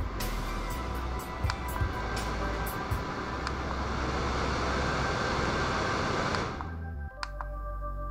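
Small fan of a Bionic Cube desktop air purifier running louder and louder as its button is clicked up through the speed levels, then quickly spinning down about six and a half seconds in. A few small button clicks come early on, over steady background music.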